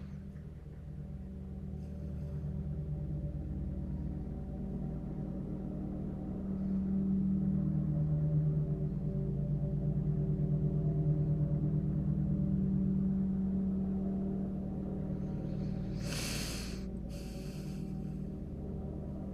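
A low steady hum of several held tones that swells louder through the middle and eases off again, with two short hissy noises near the end.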